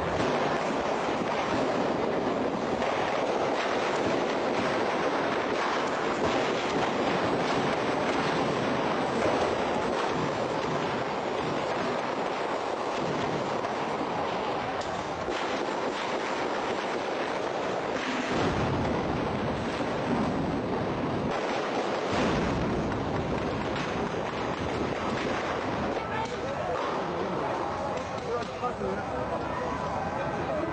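Steady rushing noise of wind on an outdoor microphone, with indistinct voices under it.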